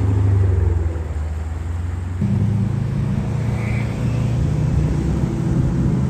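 Low V8 exhaust rumble of a Dodge Challenger R/T driving slowly past at close range. About two seconds in, the engine note steps up in pitch and stays there.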